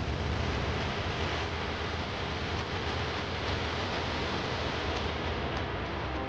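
A steady rushing noise with a deep rumble underneath, holding evenly throughout.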